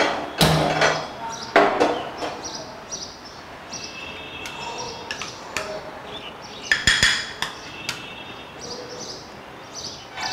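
Metal spoon clinking and scraping against small glass bowls of spice paste. There are several sharp knocks, the loudest just after the start, about a second and a half in and around seven seconds, some of them ringing briefly.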